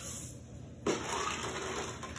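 A cupful of chocolate chips poured into a pot: a sudden rushing rattle of small hard pieces starts about a second in and runs on.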